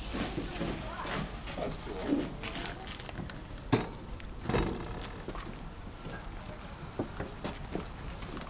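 Outdoor market background: indistinct voices, footsteps on gravel, and scattered clicks and knocks from handling things, with one sharp knock a little under four seconds in.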